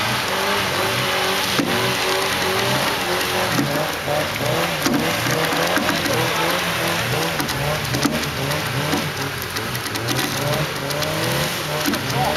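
Off-road 4x4 engine revving up and falling back again and again as it is driven hard through mud, over a steady hiss.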